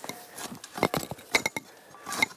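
A few scattered light clicks and small metallic clinks as a steel planting spade works a seedling into ground strewn with woody slash.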